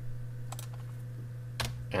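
A couple of computer keyboard key clicks, one about half a second in and one near the end, over a steady low hum.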